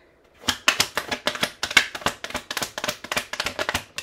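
A deck of tarot cards being shuffled by hand: a rapid, dense run of crisp card clicks starting about half a second in and stopping just before the end.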